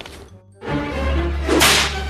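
A whip swished and cracked once, sharp and bright, about one and a half seconds in, over a low music bed that comes in about half a second in.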